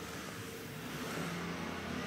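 Motor scooter engine running as it comes closer, growing gradually louder.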